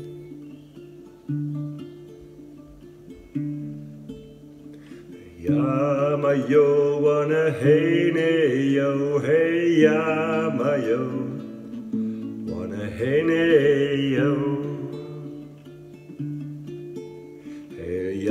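Acoustic guitar playing a slow song intro: three strummed chords that each ring out and fade. About five seconds in, a man begins singing a chant-like melody over the strumming, drops out after about ten seconds, and the guitar carries on alone near the end.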